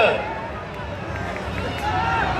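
Busy street-festival crowd noise with voices: a long drawn-out call falls away in pitch at the start, then a quieter murmur of the crowd, and a voice starts up again near the end.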